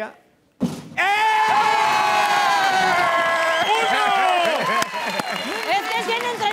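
A short thump, then a long, high, held shout that falls slightly in pitch, followed by excited yelling and cheering: a thrown prop has gone through the basketball hoop for a score.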